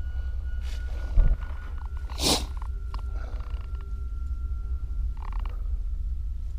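Low steady rumble of a handheld camera's microphone moving through a cluttered room, under a faint steady high tone, with a dull thump about a second in and a short hiss just after two seconds.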